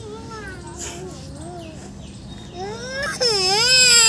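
A small boy's high-pitched voice: soft gliding sounds, then from about three seconds in a louder, drawn-out, wavering squeal.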